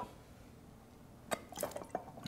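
Mead drawn by mouth through a clear plastic siphon tube to start a siphon from a glass jug. It is quiet at first, then a few short clicks and liquid sounds come in quick succession about a second and a half in.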